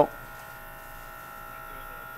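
Steady machine hum with a constant high whine, unchanging throughout.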